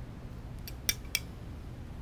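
Three quick, light clinks of a small porcelain coffee cup in its gold metal holder as it is lifted and sipped from, the middle one loudest, over a faint room hum.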